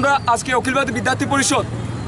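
A man speaking in a loud, steady voice, with road traffic running in the background.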